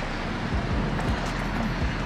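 Steady outdoor background noise of road traffic, with a few soft low rumbles of wind on the microphone.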